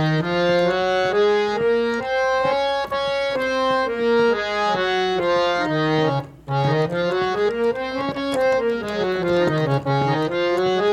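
Hand-pumped harmonium playing the C sharp major scale one note at a time, reedy held notes stepping up the octave and back down. After a short break a little past the middle, the scale runs up and down again more quickly.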